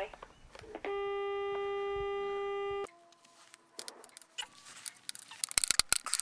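Steady telephone tone on the line for about two seconds after the voicemail service hangs up, followed by a fainter lower tone. Then a few scattered clicks and a quick cluster of knocks near the end.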